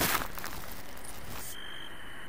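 Steady rushing hiss of skis running through deep powder snow, with snow spray. About one and a half seconds in it gives way to a quieter low hum with a faint, thin, steady high tone.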